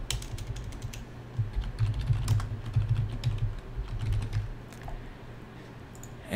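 Typing on a computer keyboard: irregular bursts of quick keystrokes as a word is typed in.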